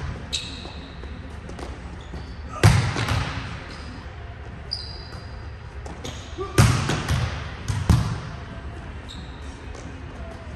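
A volleyball being struck and hitting the court in a large gym: three sharp, echoing smacks, about a third of the way in and twice more a little past the middle.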